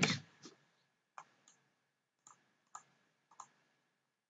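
Faint, irregular clicks of a computer keyboard and mouse, about five over the stretch, a couple of them in quick pairs.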